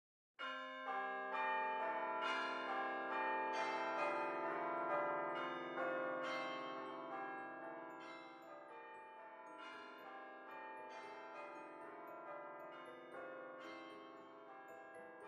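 Bells ringing: a run of struck bell tones, about one or two strikes a second, each ringing on and overlapping the next, growing quieter in the second half.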